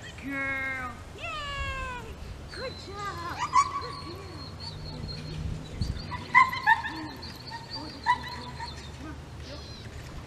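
A woman calling a dog in two drawn-out calls with falling pitch in the first two seconds, followed by scattered high, squeaky sounds and a few sharp clicks.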